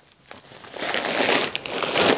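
Plastic bag of frozen peas, used as an ice pack on the knee, crinkling and rustling as it is gripped and lifted off. The rustle starts about half a second in and builds.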